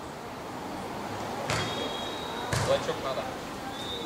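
A beach volleyball struck by hand twice, a sharp smack about one and a half seconds in and another a second later: the serve and the receiving pass.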